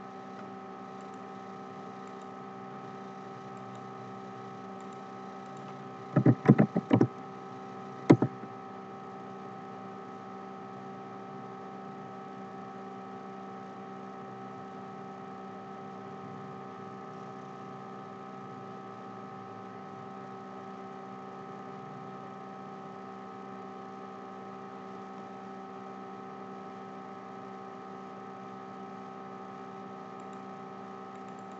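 Steady electrical hum made of several level tones, broken about six seconds in by a quick run of about five sharp clicks and another click about a second later.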